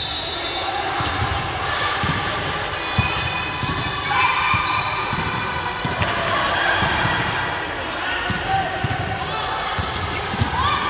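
Volleyball rally: the ball is struck several times by hands and thuds on the court, with sharp hits spread through the rally. Players' voices call out and chatter throughout, echoing in a large sports hall.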